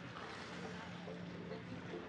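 Seaside ambience: a steady low motor hum over a haze of wind and water noise.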